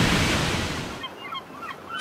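Splash and surf of a breaching whale: a wash of water noise that dies away over about the first second, then faint short chirps.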